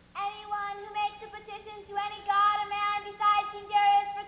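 A child's voice singing a melody in held notes, a new note about every half second, starting suddenly just after the beginning.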